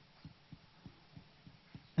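A quiet room with a string of faint, irregularly spaced low thumps.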